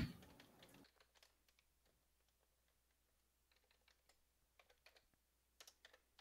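Faint computer keyboard typing: sparse key clicks with long gaps, and a few quick clusters of clicks near the end.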